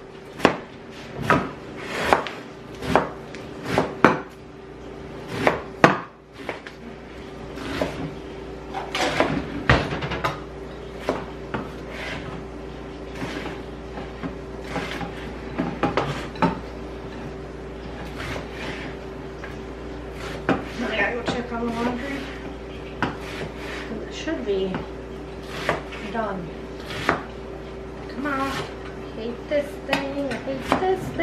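Chef's knife chopping bell peppers on a cutting board: sharp strokes about once or twice a second, clearest in the first few seconds, over a steady low hum. A hand-held can opener is worked on a can later on.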